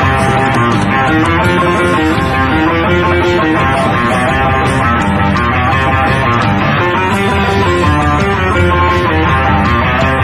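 Live blues-rock trio playing loudly, with an electric guitar picking a moving melodic line over bass and drums.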